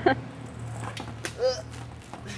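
A person's brief voice sound about a second and a half in, over a steady low hum.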